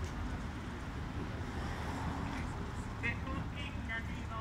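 Street background: a steady low traffic rumble with indistinct voices, and a few short higher-pitched calls about three seconds in.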